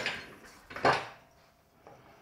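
A square wooden block being handled onto a wood lathe's metal centers: short knocks of wood against metal, one clear knock about a second in and a small click near the end.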